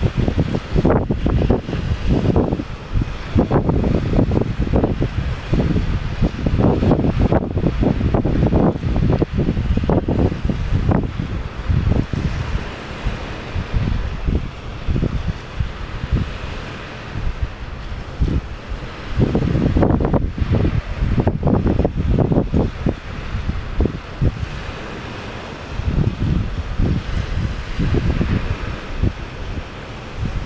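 Wind gusting onto the microphone in irregular, loud rumbling buffets, easing off for a few seconds around the middle, with sea surf washing behind it.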